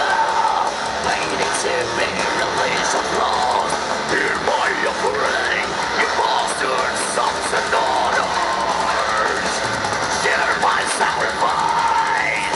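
Symphonic black metal band playing live: distorted electric guitars and drums over a PA, with a harsh, yelled vocal. It is heard from among the audience.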